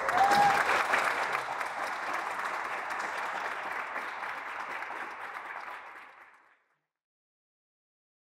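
A group of about twenty people applauding, loudest at the start and tapering off before it stops about six and a half seconds in.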